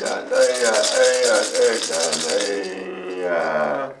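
Navajo medicine man's healing chant, a man's voice holding long gliding notes, with a gourd rattle shaken quickly and evenly for about the first two and a half seconds. The chant stops just before the end.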